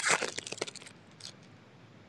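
Foil wrapper of a Panini Optic basketball card pack being torn open and crinkled: a quick crackling burst in the first half-second or so, then a faint rustle near the middle.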